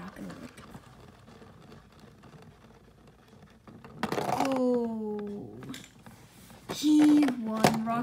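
A Beyblade top winding down on the stadium floor, a faint whirring rattle, for the first half. Then a child's voice gives drawn-out wordless exclamations: one falling in pitch about halfway through, and a louder held one near the end.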